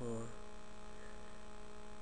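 Steady electrical hum, a buzzy mix of fixed tones that runs unchanged under the recording.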